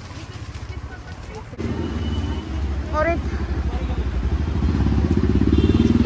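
A motorcycle engine running close by. It comes in sharply about a second and a half in and grows steadily louder.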